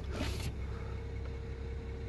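Steady low background hum with a faint steady tone, and a brief rustle of handling noise just after the start.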